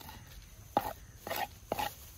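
Three short harsh animal calls, about half a second apart.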